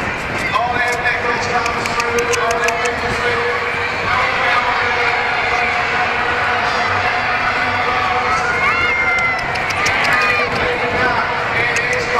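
Shetland ponies galloping on a sand arena, their hoofbeats picked up by the rider's helmet camera, under a race commentary over the public address and crowd noise.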